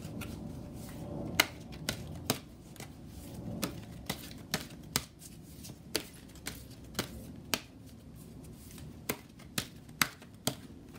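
A large oracle card deck being shuffled by hand, the cards tapping and snapping sharply about twice a second in an uneven rhythm.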